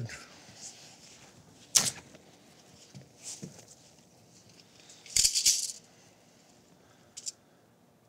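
Handling of a peeled TPO membrane test strip and a tape measure: a sharp click about two seconds in, a short rattle around five seconds in as the tape blade is drawn out, and a faint click near the end.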